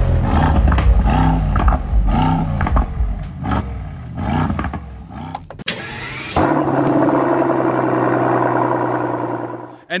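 Intro sound design with swooping tones. About six seconds in, a car engine starts and runs steadily for about three seconds, then cuts off suddenly.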